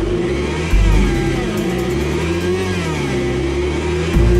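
Car engine running on a chassis dynamometer as the car starts to pull on the rollers from standstill at low revs; the engine note wavers up and down, with a heavy low thud about three-quarters of a second in.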